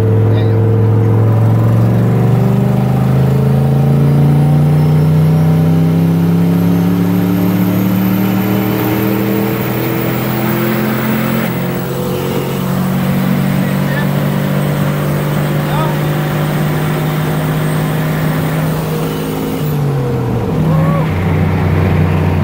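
Turbocharged 6.0-litre LS V8 in a 1995 GMC K2500 pulling hard under acceleration, heard from inside the cab. Its note climbs steadily while a high turbo spool whistle rises above it. Near the end the engine note drops suddenly and the whistle cuts off.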